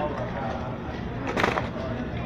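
Steady rumble and rustle of a busy store aisle, with one short clatter about one and a half seconds in.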